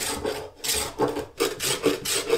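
Hand-sanding the edge of a glued-up blade strip with a small sanding block, in short back-and-forth strokes of about three a second.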